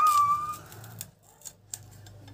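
A high, steady whine that cuts off about half a second in, then a few crisp cuts as an onion is sliced against an upright curved boti blade.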